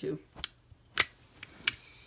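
Sharp clicks and clacks from a metal fire alarm pull station being handled: three clicks, the loudest about a second in.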